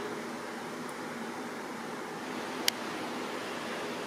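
Steady, even hiss of background room noise with a faint low hum, and one small click about two and a half seconds in.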